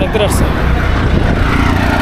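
Wind buffeting the microphone of a camera riding on a moving bicycle, over road traffic noise. A faint steady engine-like hum comes in near the end.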